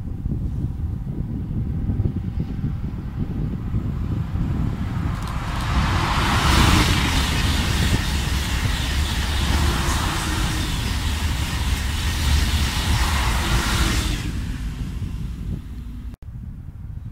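TGV high-speed train passing at speed: a loud rushing of wheels on rail and air that builds about five seconds in, peaks soon after and stops fairly suddenly near the end. Steady wind rumble on the microphone runs underneath.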